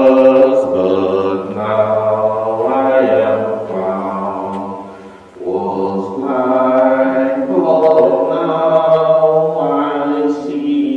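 Voices singing the entrance hymn of the Mass in long held notes, with a short break between phrases about five seconds in.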